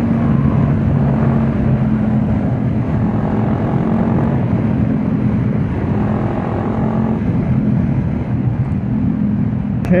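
Honda CB500X parallel-twin engine, fitted with a GPR Furore Nero exhaust, running at a steady cruise under the rider, with wind rushing over the helmet-mounted microphone.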